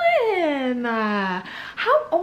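A woman's voice drawn out in one long falling note, sliding down in pitch for about a second and a half before she breaks off.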